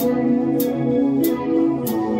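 Rock band playing live: electric guitars holding chords over a drum beat, with a cymbal struck about every 0.6 seconds.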